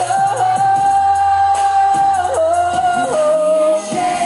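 Male pop vocal group singing live into handheld microphones over a musical backing: a long held note for about two seconds, then a shorter held note and a step down to a lower one near the end, with other voices in harmony.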